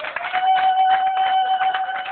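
Audience applauding, with a long, steady high-pitched tone held over the clapping from just after the start.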